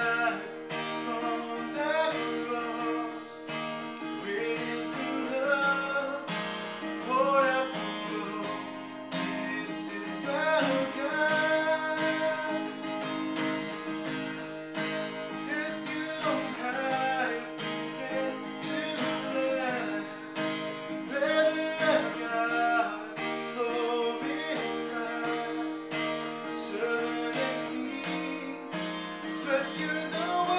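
A man singing a praise and worship song while strumming chords on an acoustic guitar.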